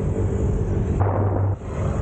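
Riding noise from a Yamaha Mio 125 scooter on the move: steady low wind rumble on the microphone with the scooter's engine running underneath. About halfway through, a louder low rumble lasts about half a second and cuts off suddenly.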